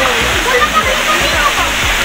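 A waterfall plunging into a pool: a loud, steady rush of falling water, with people's voices faintly audible over it.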